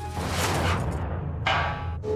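A short children's-TV music sting over a steady bass line: a swooshing, cymbal-like wash that fades within a second, then a second bright percussive hit about a second and a half in that cuts off abruptly.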